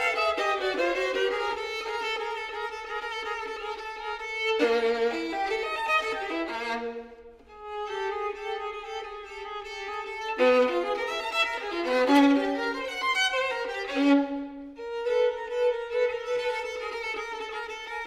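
Solo violin, bowed: a downward slide settles into a held note, then quick, accented passages break off briefly about seven seconds in, where the notes ring away. A long held note closes the passage.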